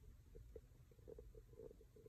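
Near silence: faint low room rumble.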